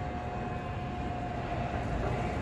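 Running escalator's steady low mechanical rumble and hum, with a thin steady tone over it that fades out near the end.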